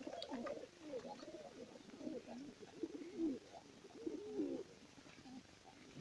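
Domestic pigeons cooing in the loft: a run of low, wavering coos that dies away about four and a half seconds in.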